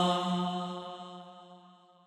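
The closing held note of an unaccompanied naat: a steady, chant-like vocal drone on one pitch, fading out over two seconds.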